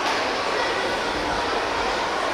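Steady din of an indoor swimming pool hall during a race: spectators' voices and swimmers' splashing blended into one continuous noise, with no single sound standing out.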